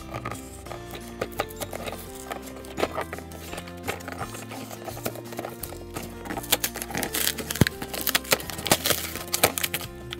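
Background music, over a cardboard toy box being torn open by hand: sharp rips, cracks and clicks of cardboard, thickest in the second half.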